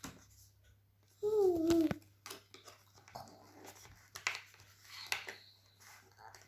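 Cardboard chocolate advent calendar being handled: small clicks and rustles of the opened door flap and the chocolate tray under the fingers. About a second in comes the loudest sound, a short high voice-like cry whose pitch falls.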